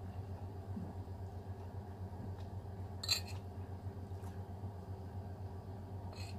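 Quiet eating from a plate with a utensil: a brief click about three seconds in and a fainter one later, over a low steady hum in the room.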